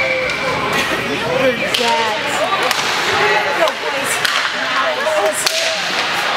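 Ice hockey rink sound: indistinct chatter of spectators in the stands, broken by a few sharp cracks of hockey sticks and puck on the ice.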